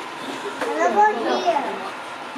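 Children's voices talking and calling out in high-pitched, untranscribed chatter, loudest around the middle.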